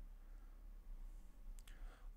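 Very quiet room tone with a steady low hum, and a faint click or two about one and a half seconds in.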